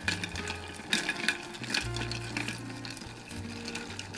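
Bar spoon stirring ice in a glass mixing glass: a steady run of light ice clinks and rattles. Background music with low bass notes plays underneath.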